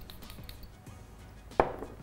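A single sharp knock about one and a half seconds in, like a small object set down on a cluttered makeup table, over faint background sound.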